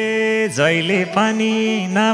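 A male voice singing a Nepali folk dohori line: one long note held steady, a brief break about half a second in, then a new phrase with wavering, ornamented turns of pitch.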